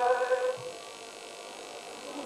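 A man's unaccompanied chanted elegy ends on a held note about half a second in. A pause follows, filled with a steady electrical hum.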